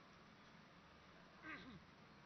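Near silence, broken by one brief faint falling voice-like sound about one and a half seconds in.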